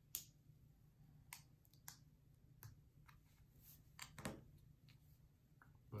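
A few faint, sharp clicks of small plastic Lego minifigure parts being handled and fitted together, scattered over a quiet room, with two close together a little past the middle.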